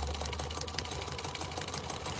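A low, steady hum with faint crackling over it, from the soundtrack of an animated film.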